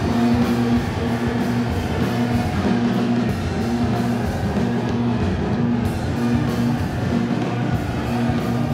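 Loud rock music on drum kit and guitar, with a pulsing low note and steady drum strikes.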